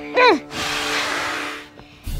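A short falling cry, then a rushing whoosh of noise lasting about a second that fades away, over soft background music.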